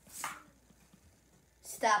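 A pen scratching briefly across paper on a wooden desk, one short stroke just after the start. A boy's voice says "stop" near the end.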